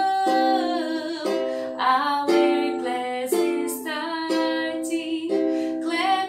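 A woman singing a simple hello song while strumming chords on a ukulele, with a fresh strum about once a second.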